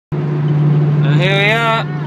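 Steady low drone of a car travelling at highway speed, heard from inside the cabin. A woman's voice rises briefly over it a little past one second in.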